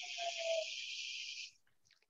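A steady hiss lasting about a second and a half, with a faint slightly falling tone in its first half, then it stops.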